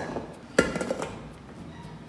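Metal bowl and paddle attachment being fitted onto a tilt-head stand mixer: one sharp metallic clank with a brief ring about half a second in, then light handling noise.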